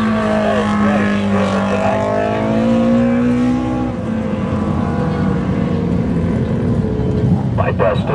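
Dwarf race cars running laps on a dirt oval, a steady engine note that edges up in pitch about three seconds in, then gives way to a rougher, lower engine drone.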